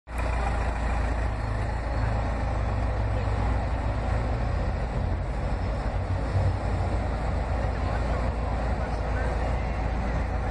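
Street traffic noise: cars passing on a city street over a steady low rumble.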